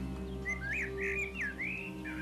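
A bird chirping: a quick run of five or six short, swooping whistled notes starting about half a second in, over a low steady background drone.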